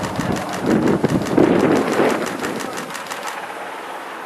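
A fast, even run of sharp clicks, about seven a second, that stops a little after three seconds, over a murmur of background noise that is loudest in the first two seconds.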